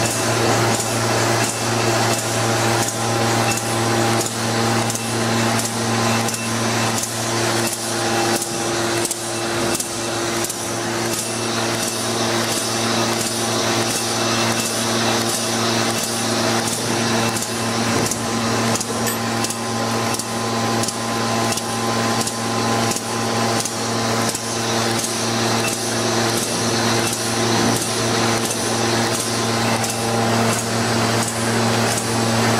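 PT 230 envelope glue and strip-applying machine running at speed: a steady motor hum under an even, repeating clatter of its feed and roller mechanism, one stroke per machine cycle.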